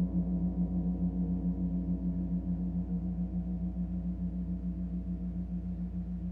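A gong's low tone ringing on after a stroke and slowly fading, with a steady wavering pulse in its sound.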